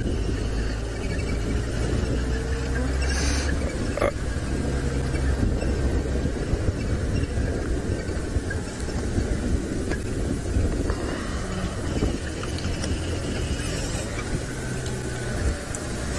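Open 4x4 safari vehicle driving along a rough dirt track: a steady low engine drone with road rumble, and a single sharp knock about four seconds in.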